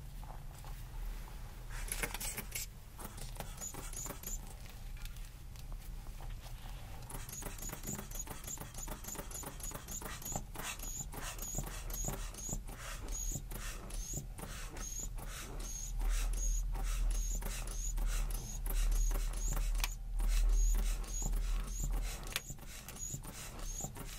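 Rubber inflation bulb of a blood pressure cuff squeezed over and over, starting about seven seconds in. Each squeeze gives a short puff and click with a brief high chirp, a little more than once a second. A low rumble swells partway through.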